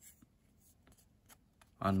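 Pokémon trading cards sliding and flicking against one another as a hand leafs through a pack: a few soft scrapes and light ticks. A man starts speaking near the end.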